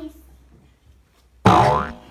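A cartoon 'boing' sound effect about one and a half seconds in: a sudden, springy tone that drops in pitch and lasts about half a second, louder than the voices around it.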